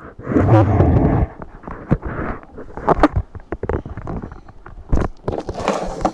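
Handling noise of a camera being picked up and moved, with a loud rough rumbling burst about half a second in and scattered sharp knocks after it.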